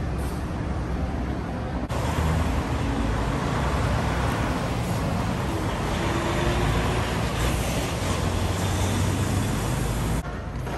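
City street traffic: a steady wash of car engine and tyre noise with a low rumble, jumping louder about two seconds in and staying steady after.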